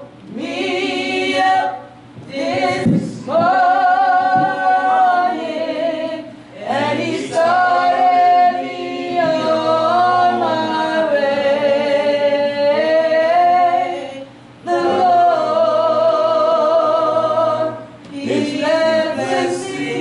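Unaccompanied gospel-style singing: long, drawn-out sung phrases with a wavering vibrato, in about five lines with short breaks between them.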